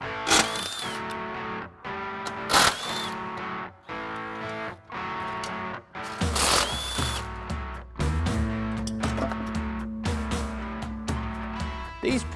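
Background guitar music, over which a cordless drill runs in three short bursts, about half a second, two and a half and six seconds in, backing out fasteners from the car's front end.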